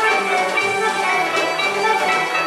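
Live Turkish art music played by a small ensemble, with a clarinet and plucked strings such as an oud giving sharp, ringing note attacks.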